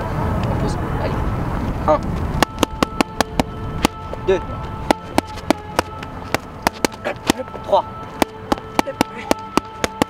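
Boxing gloves striking focus mitts: a run of sharp slaps, several a second in uneven bursts, starting a couple of seconds in after a low rumble.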